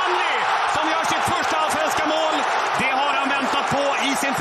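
Football stadium crowd cheering a goal just scored, a steady loud roar, with a man's excited voice over it.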